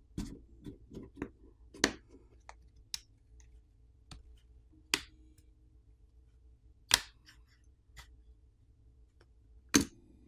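Plastic catches of a Samsung Galaxy M33 5G's plastic back housing popping free of the frame as a plastic pry pick is worked along its edges: a string of sharp, irregular clicks and snaps. Four of them, about two, five and seven seconds in and near the end, are much louder than the rest.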